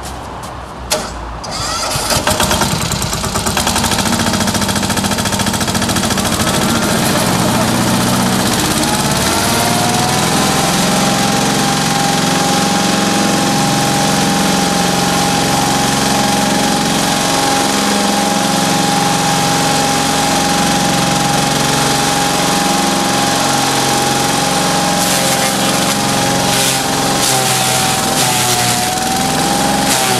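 Two-wheel walking tractor engine starting about two seconds in and running steadily, driving a homemade feed crusher whose rotor spins up into a steady high whine. Near the end the whine dips and wavers as dry stalks are fed in and ground.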